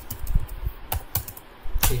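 Computer keyboard keystrokes: a handful of separate key presses, unevenly spaced, as a number is typed into a spreadsheet-style table cell. The loudest press comes near the end.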